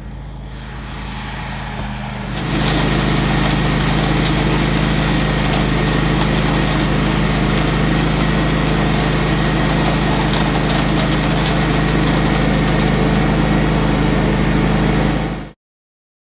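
Concrete mixer truck's diesel engine running steadily while wet concrete pours down its chute into a tracked concrete buggy's hopper. It gets louder about two and a half seconds in and cuts off abruptly just before the end.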